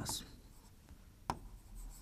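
Stylus writing on an interactive display board: faint scratching strokes, with one sharp tap about a second and a quarter in.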